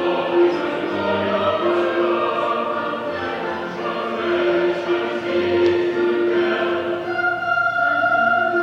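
A small church congregation singing a hymn in unison over long, held accompanying chords.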